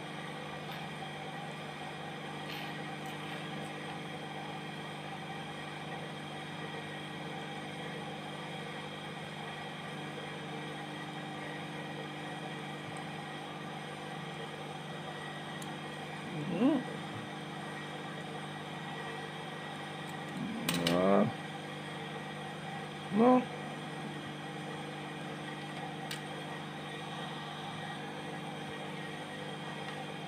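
Steady hum of an industrial sewing machine's electric motor left running, holding several even tones without change.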